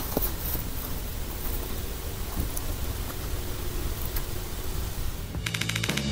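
Steady rushing hiss with a few faint ticks, the open-air sound of an outdoor night camera. About five and a half seconds in, rock music with a plucked guitar starts.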